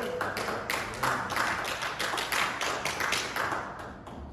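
A quick run of sharp taps or claps, about five a second, fading near the end.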